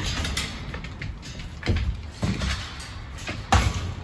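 Metal clanks and rattles of a wire kennel gate and its latch being worked open: a few separate knocks, the loudest near the end.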